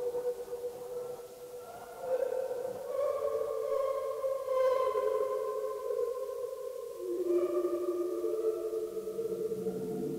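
Electronic tape music: several long, steady tones held together and overlapping. Fresh tones swell in about two seconds in, and around seven seconds the chord shifts to new, partly lower pitches.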